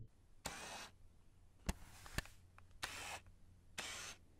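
Faint sound effects of an animated logo intro: three short swishes, with two sharp clicks about half a second apart between the first and second.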